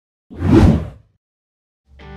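A single short whoosh sound effect, lasting under a second, with a low thump in its body. It is followed by silence, then music starts right at the end.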